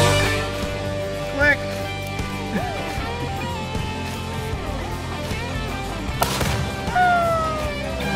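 Quiet background music, with a single sharp bang about six seconds in from a small explosion.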